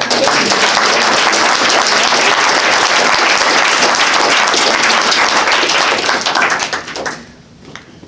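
Audience applauding at the end of a poetry reading, then dying away about seven seconds in.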